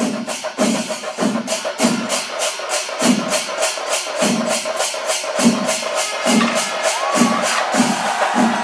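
Kerala temple percussion ensemble (melam) playing a fast, even beat: sharp high strokes about four to five a second over deeper drum beats, with a steady held tone and a crowd underneath.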